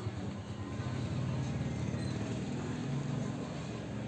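A steady low engine hum, as from a vehicle idling.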